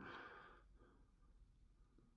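Near silence: faint room tone, with a brief, faint exhale fading out just at the start.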